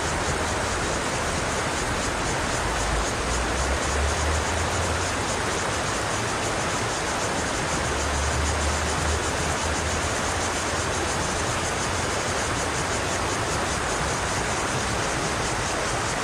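Steady rush of a shallow river riffle flowing fast over stones, with two brief low rumbles a few seconds in and around the middle.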